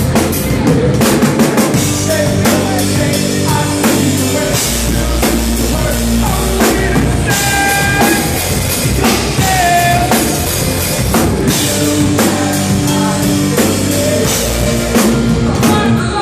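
Live hard rock band playing loudly, the drum kit with its bass drum to the fore over the rest of the band.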